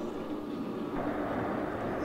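Steady running noise of a train from a TV episode's soundtrack: an even rumble with a faint low hum, a little louder from about a second in.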